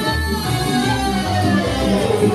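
Lively folk dance music for a circle dance, played loud through a sound system, with a woman singing into a microphone over a steady bass beat.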